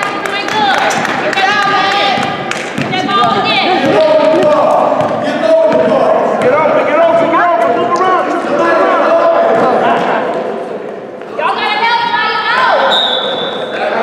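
Basketball bouncing repeatedly on a gym court during a youth game, with players and spectators shouting throughout, echoing in a large hall.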